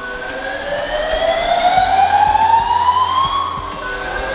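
Building fire alarm sounding during a fire alarm system test: a slow, rising whoop tone that climbs in pitch over about three and a half seconds, then starts again near the end.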